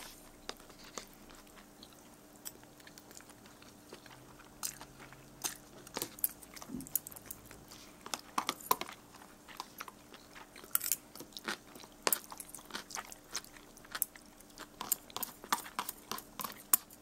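A person chewing a mouthful of ramen noodles with pickles, close to the microphone: irregular wet mouth clicks and crunches that come in spells, with quieter gaps between.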